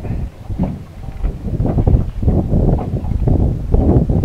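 Wind buffeting the microphone on an open boat: irregular low rumbling gusts that rise and fall every second or so.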